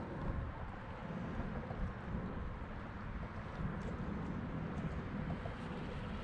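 Wind buffeting an action camera's microphone: a steady, uneven low rumble with no distinct events.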